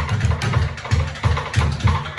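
Jazz rhythm section playing without the trumpet: upright bass walking an even line of plucked notes about three a second, with drum-kit cymbal strokes over it.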